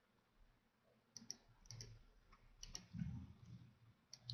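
Faint computer mouse clicks: two quick pairs of clicks, with faint low thumps of mouse handling between them.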